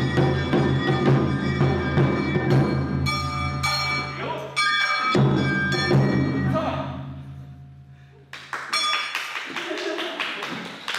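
Awa Odori festival music with drums and percussion over pitched instruments. It breaks off abruptly about five seconds in, dies down around eight seconds, then starts again.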